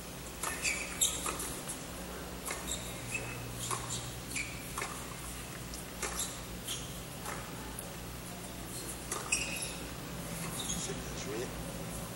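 Tennis rally on an indoor hard court: sharp racquet-on-ball strikes every second or so, with short high squeaks of shoes on the court surface.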